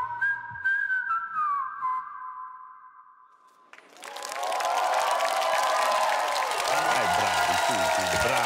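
A song's last high notes, a single melody line gliding between pitches, fade almost to nothing. A few seconds in, a studio audience bursts into loud applause and cheering that carries on to the end.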